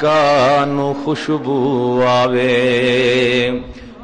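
A man's voice chanting a Punjabi naat in long held notes with vibrato: two drawn-out notes, the second fading away near the end.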